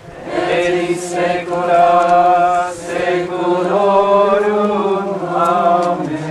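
Voices of a procession singing a slow hymn together, in phrases of long held notes with a short break about three seconds in.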